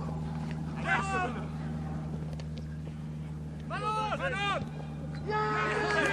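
Men shouting calls during football play: a short shout about a second in, a louder run of shouts around four seconds in and more near the end. Under them runs a steady low hum.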